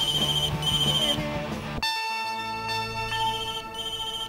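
Telephone ringing in a double-ring pattern: two short rings in quick succession near the start, a pause, then two more near the end. Background music plays underneath, changing abruptly about two seconds in.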